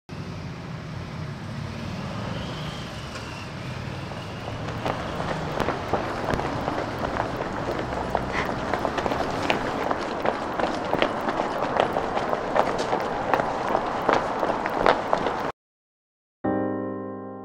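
Running footsteps on a city pavement over steady street traffic noise, the footfalls becoming sharper and more frequent from about five seconds in. The sound cuts off abruptly near the end.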